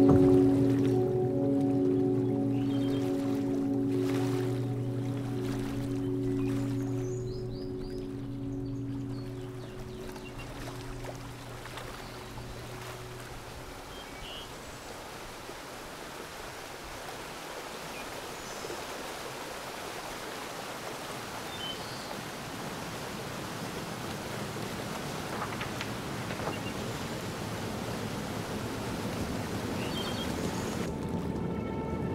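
Ambient background music: sustained low chords that fade out over the first dozen seconds, leaving a soft, even wash of noise that slowly grows louder.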